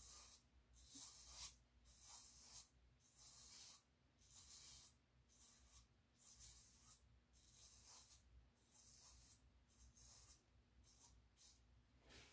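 Cartridge razor drawn across scalp stubble slicked with hair conditioner: a run of faint, scratchy short strokes, about one a second, that get fainter in the second half.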